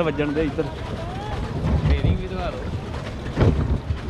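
Wind rumbling on the microphone over water washing along a small boat's hull as it moves across the lake, with a strong gust about three and a half seconds in.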